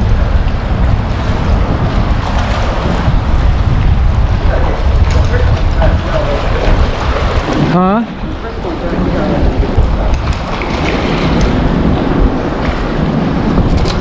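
Steady wind buffeting the microphone, with waves washing against the shoreline rocks beneath it.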